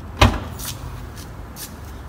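Trunk latch of a 2018 Toyota Camry releasing with a single sharp clunk about a quarter second in, as the trunk lid pops open.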